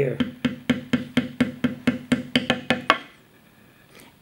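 A mallet tapping a leather beveling stamp in quick, steady strokes, about five a second, to press down the damp leather along one side of each cut line. The taps vary a little in strength and stop about three seconds in.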